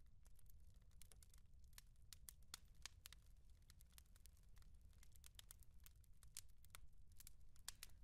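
Near silence: a low steady room hum with many faint, scattered clicks and crackles.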